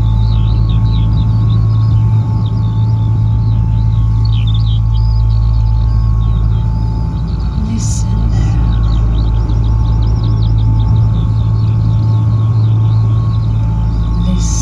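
Electronic soundscape played through outdoor PA loudspeakers: a loud, steady low drone with two faint steady higher tones, and quick twittering chirps above it. A short hiss comes about eight seconds in.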